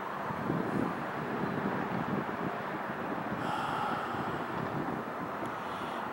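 An evening breeze buffeting the microphone over a steady hum of distant freeway traffic.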